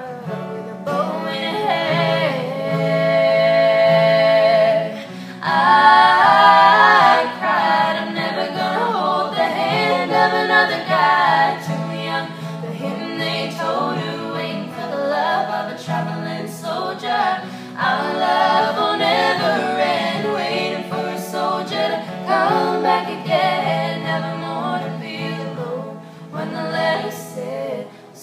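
Three young voices, male and female, singing a country ballad together in harmony, with an acoustic guitar strummed underneath.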